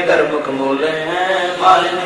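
A man chanting Hindi devotional verses in a slow, steady melody, drawing out long held notes.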